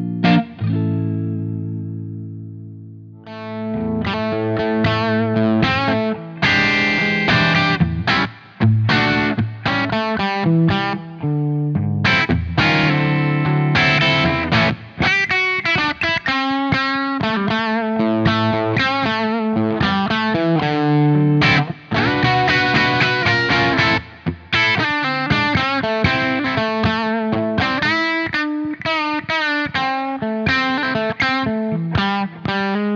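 Electric guitar through a J. Rockett HRM v2 Dumble-style overdrive pedal set with level at maximum and gain at zero, giving a very dynamic, almost clean edge-of-breakup tone. A chord rings and fades over the first three seconds, then busy lead and chord playing runs on; later the guitar is a Les Paul rather than the Stratocaster heard at the start.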